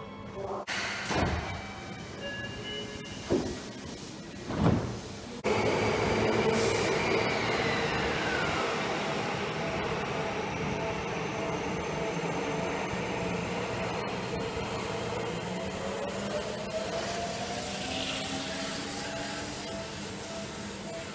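Electric train noise at a station platform: a few short knocks in the first five seconds, then a sudden loud, steady rumble with a whine that falls in pitch. Near the end a Seibu 20000 series EMU's traction-motor whine rises in pitch as it pulls away.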